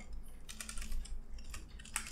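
Typing on a computer keyboard: irregular key clicks in short runs.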